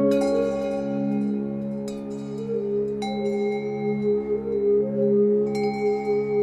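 Background music: a slow, calm piece of ringing, bell-like tones over a steady low drone, with a new note struck about every second or two.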